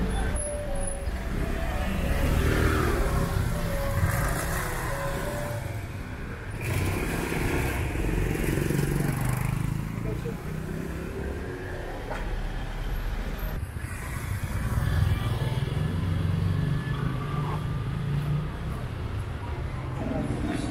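Street traffic: motor scooters and cars running and passing close by, with people's voices in the background.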